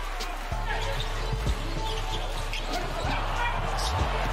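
A basketball bouncing a few times on a hardwood court during game play, over background music with a steady low bass.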